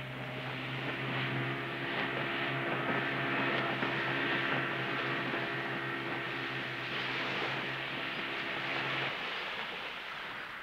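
Outboard motor of a small open fishing boat running steadily under way, with water and hull rush over the engine drone. About nine seconds in the motor cuts out, leaving the fading rush of the boat's wake.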